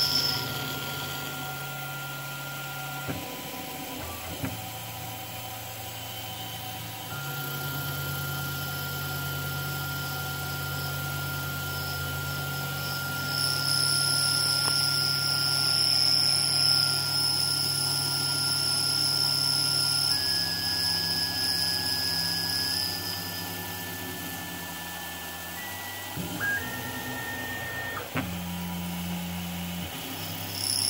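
CNC-converted Precision Matthews PM-25MV benchtop milling machine slotting a block of plastic with an end mill: spindle and cutter running with a steady whine, plus machine motor tones that hold level and then jump in pitch several times near the end as the feed changes. The cutting gets louder, with a high whine, through the middle of the stretch.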